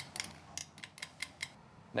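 A quick run of light clicks and taps of glass and utensil as honey is scraped out of a small glass prep bowl into a large glass mixing bowl.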